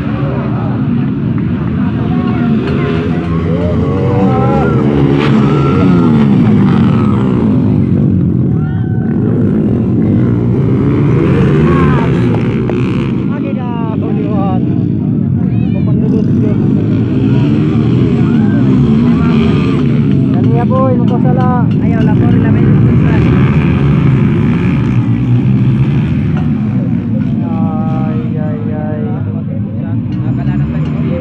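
Racing motorbike engines revving and passing, their pitch rising and falling several times, over the talk and shouts of a crowd of spectators.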